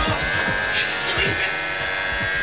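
Corded electric hair clippers buzzing steadily as they shave a dog's coat, with background music playing.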